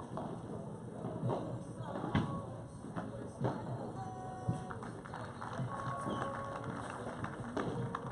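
Padel rally: the ball is struck by rackets and rebounds off the court and glass walls, giving sharp knocks at irregular intervals, the loudest about two seconds in.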